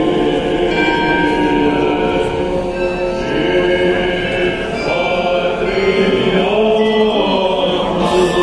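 Orthodox choir chanting, with church bells ringing alongside.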